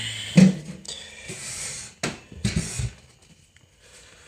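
A cabinet door being opened and its contents handled: a loud knock about half a second in, then rustling and shuffling, with a couple more knocks before it quiets.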